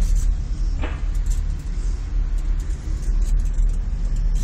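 Low, steady rumble inside an aerial cable-car cabin as it rides along its cable.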